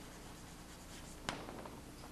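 Chalk writing on a chalkboard: faint scratching strokes, with one sharp tap about a second and a quarter in.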